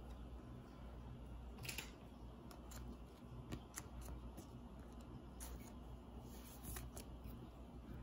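Faint scattered ticks and light scrapes of a trading card being handled and slid into a clear plastic card sleeve, over a low steady room hum.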